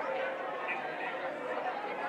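Congregation praying aloud all at once: many voices overlapping in a continuous babble of prayer, with no single speaker standing out.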